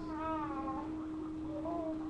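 A baby vocalizing: a whiny call of under a second that rises and falls in pitch near the start, then a shorter one near the end, over a steady hum.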